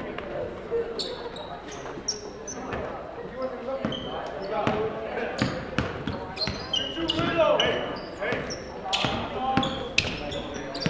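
Basketball bouncing on a hardwood gym floor, with short high sneaker squeaks and indistinct voices echoing in a large hall.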